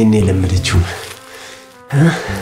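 A man's wavering, strained voice without clear words, loudest at the start and trailing off within about a second, over background music with steady low tones.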